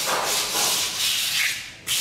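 A hand rubbing over the rough surface of a cast cement character to smooth it, a scratchy hiss that comes in strokes and breaks off briefly near the end.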